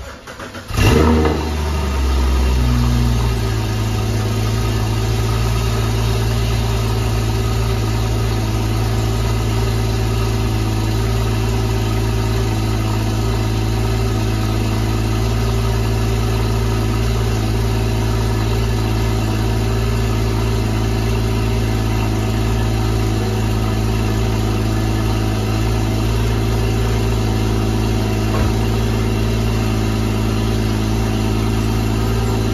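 Porsche GT4's flat-six engine starting, flaring briefly about a second in, then settling within a couple of seconds into a steady idle. It is being run to warm the freshly changed oil.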